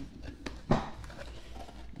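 Wooden watch box being worked out of its tight outer sleeve by hand: faint rubbing and handling noise, with a sharp knock about three-quarters of a second in.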